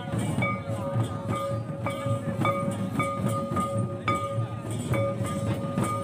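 Live dance music from a folk dance gathering: percussion strokes at an even beat of about two a second under a long held high note.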